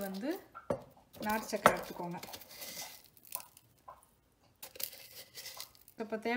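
Metal spoon scooping powdered jaggery from a steel tin and scattering it over the puttu: scraping and rustling, with a few sharp clicks of metal on metal.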